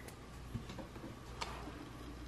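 A few soft, scattered clicks and taps from hands handling paper bills and a plastic ring binder.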